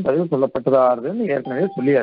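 A man speaking steadily in a lecture. About one and a half seconds in, a short steady electronic tone like a bell or beep sounds under his voice.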